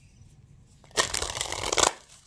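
A tarot deck being shuffled by hand: a dense burst of rapid card flutter, lasting just under a second and starting about halfway through.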